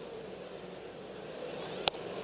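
Steady ballpark crowd murmur, with a single sharp pop near the end: a baseball smacking into the catcher's mitt.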